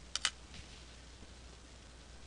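Two quick, sharp clicks close together just at the start, from small dissecting scissors snipping away membrane; after that only a faint, steady low hum.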